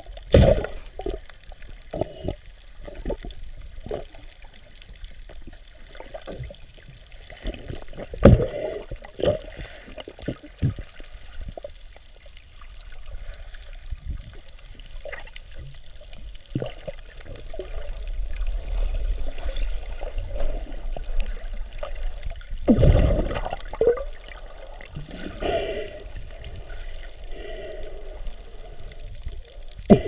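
Muffled water sloshing and gurgling around a camera held just below the surface, with irregular knocks and splashes, the loudest about 8 s and 23 s in, and a busier stretch of churning water in the second half.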